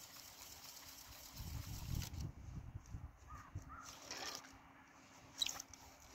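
Faint handling of ice-fishing gear at a hole in the ice: rustling and low rumbling as the rod and skimmer are moved, then one sharp click near the end as the gear is set down on the ice.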